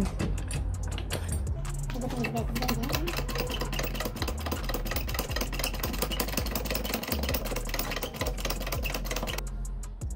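Hydraulic floor jack being pumped by its handle to test it after new O-rings were fitted: a steady run of rapid mechanical clicking and rattling that stops just before the end.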